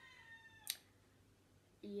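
A long, high-pitched animal call that holds and then slides slightly down in pitch, cutting off about three-quarters of a second in with a sharp click.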